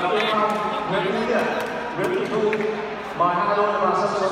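Men's voices talking in a large sports hall, with a few faint clicks.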